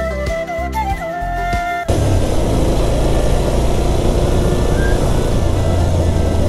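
Background music with a held melody over a steady beat, cut off abruptly about two seconds in. A motorcycle's engine hum and loud wind rush on the microphone follow as the bike rides along the road.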